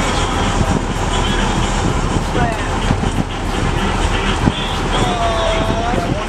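Steady engine and wind noise from a moving fishing boat, with water rushing past the hull and wind buffeting the microphone in irregular low thumps.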